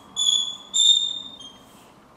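Chalk squeaking on a blackboard while letters are written: three high squeals in quick succession, each about half a second long, the last a little lower in pitch.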